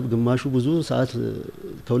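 A man speaking in an interview; only speech.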